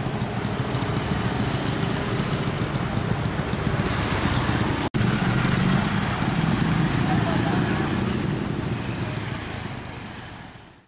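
Busy street traffic: motorcycles and cars passing close by, with indistinct voices mixed in. The sound drops out for an instant about halfway through.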